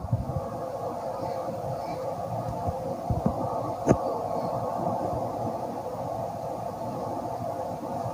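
Steady background hum of the recording room, with one short click about four seconds in.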